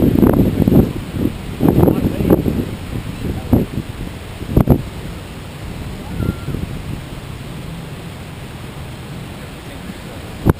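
Wind buffeting the microphone in gusts over the steady wash of surf, the gusts heaviest in the first couple of seconds and easing after. A single sharp knock about four and a half seconds in.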